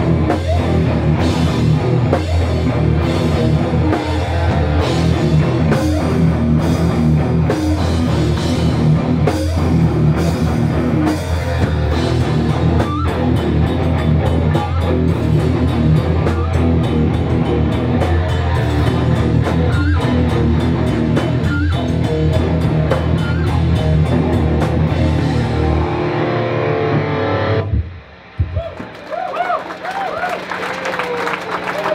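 Hardcore punk band playing live: distorted electric guitar, bass and drum kit, with cymbals struck on a steady beat. The song stops abruptly a couple of seconds before the end.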